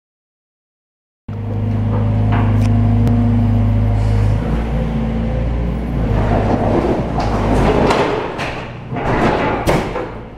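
Excavator engine running with a steady low hum as its demolition grapple tears into a building's ceiling and walls, starting about a second in. From about six seconds in, wood and debris crack and crash down in several sharp impacts, the loudest near the end.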